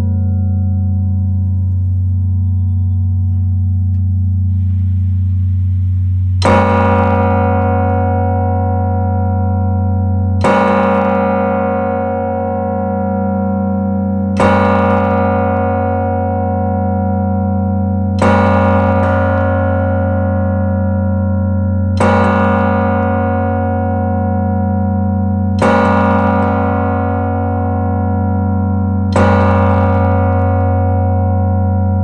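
A large bass carillon bell in a church tower, struck by its hammer seven times at steady intervals of about four seconds. Each stroke rings on with a deep, lingering hum into the next.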